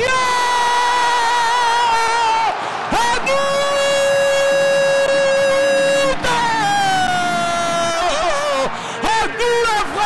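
A man's drawn-out goal shout into a microphone: two long held cries, the second the longer at about three seconds, then a cry that falls in pitch, and a few shorter shouts near the end.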